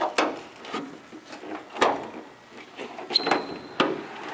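Metal clicks and clunks of a 1964 Chevy C10 pickup's hood latch being worked and the hood lifted, with a brief high-pitched squeak about three seconds in.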